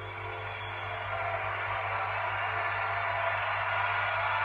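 Concert audience applauding, swelling about a second in as the last sustained keyboard chord dies away, over a steady low electrical hum.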